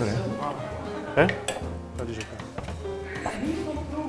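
Metal serving spoon clinking and scraping against a stainless steel pot and a plate while stew is ladled out, in short irregular clinks.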